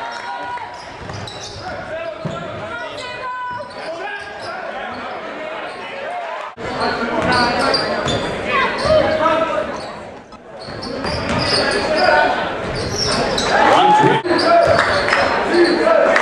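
Game sound in a high school gym: a basketball bouncing on the hardwood amid crowd chatter, echoing in the hall. The sound breaks off abruptly at cuts between clips, about six and a half, ten and fourteen seconds in, and the crowd is louder after the first cut.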